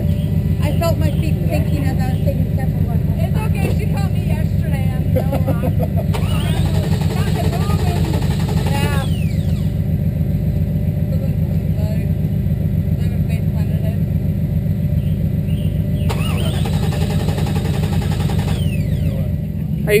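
Jeep CJ engine cranking over on the starter with a steady, even pulsing, not catching.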